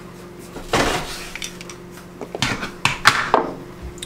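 A glass salt jar with a cork lid being handled over a cooking pot and set back down on its wooden stand. There is a short rustle about three-quarters of a second in, then a few light clinks and knocks in the second half.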